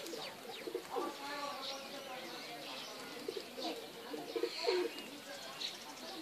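Pigeons cooing, with small birds chirping: short high chirps repeated throughout.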